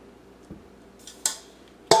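Kitchen utensil sounds against a glass baking dish: a faint tap, a short scrape about a second in, then a sharp clink with a brief ring near the end as the spatula and bowl knock against the dish.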